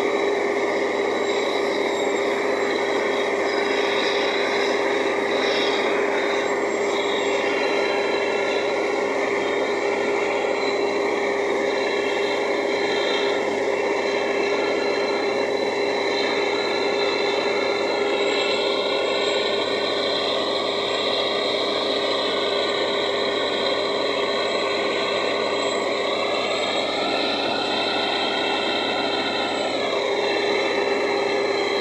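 Truck-mounted borehole drilling rig running steadily while drilling a borehole: a continuous loud machine noise with a constant hum.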